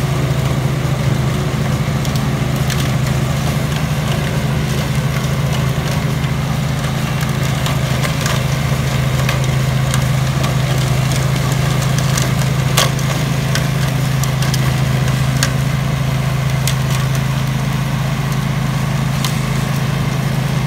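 Husqvarna riding mower's 24-horsepower Briggs & Stratton engine running steadily under load, driving a 42-inch snowblower attachment that chews up and throws snow. Scattered sharp clicks run over the steady engine drone, the loudest about two-thirds of the way through.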